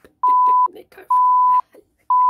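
Two loud, steady beeps of a single pitch, each about half a second long, with faint muttered speech around them: an edited-in censor bleep.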